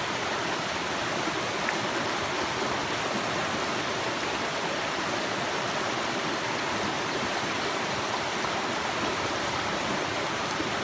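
A rocky forest brook running steadily over stones and small cascades, a constant even rush of water.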